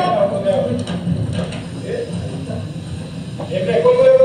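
Indistinct speech, muffled and hard to make out, over a steady low background, with a louder voice near the end.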